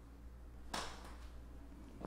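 A single short crack about three quarters of a second in, over faint room hum: a lumbar vertebra (L4) cavitating under a chiropractor's side-lying thrust. It is the normal pop of gas and fluid shifting as the joint opens.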